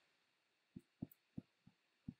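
Near silence broken by a quick run of four soft, low thuds in the second half: computer mouse clicks as the Photoshop pen tool places anchor points.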